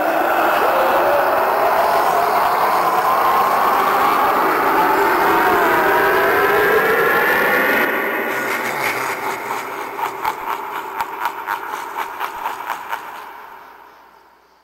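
Harvester of Souls animatronic playing its soul-sucking sound effect as it blows fog from its mouth: a loud rushing roar with wavering tones. After about eight seconds it turns into a quick run of pulses that fades away.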